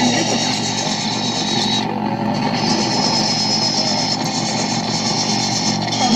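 Harsh noise music from electronics run through a chain of guitar effects pedals: a loud, dense wall of distorted noise over a steady low drone. The top hiss drops away for a moment about two seconds in.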